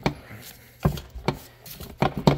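Four sharp, uneven knocks and clunks of metal parts as a transmission housing is worked loose off its alignment pins.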